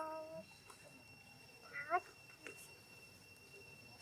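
Two short monkey coo calls from a macaque: a steady one right at the start and one rising in pitch about two seconds in, the loudest sound. Two thin, steady high tones run underneath.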